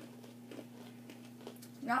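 Low, quiet room tone with a steady hum, and a few faint crunches of pretzel crisps being chewed; a voice starts speaking near the end.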